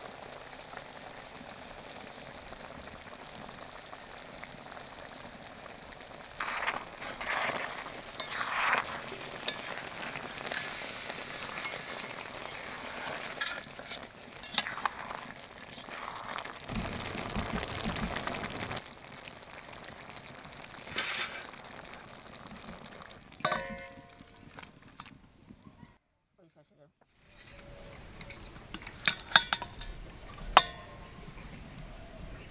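Potato-and-eggplant curry sizzling in a metal kadai, with scraping stirring strokes as spices and coriander go in. Near the end there is a brief silent gap, then a spoon clinks against a steel bowl.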